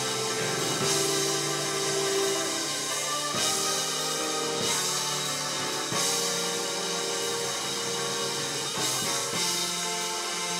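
Live church band music: sustained chords with a drum kit playing along, and a few sharp drum hits.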